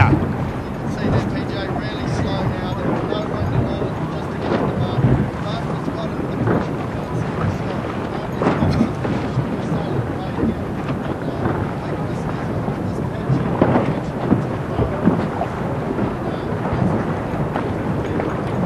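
Steady rushing and rumbling of wind buffeting an outdoor microphone over open sea, mixed with the wash of water.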